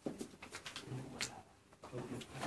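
Faint voices in a small room, with scattered light clicks and knocks.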